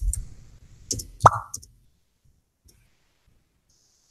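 A dull thump right at the start, then a quick run of three or four sharp clicks and knocks about a second in, the loudest with a short ringing tail.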